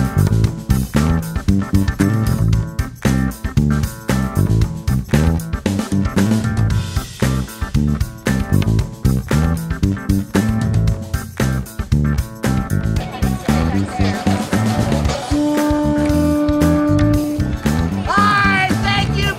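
Background music with plucked guitar and bass over a steady beat, with a long held note near the end.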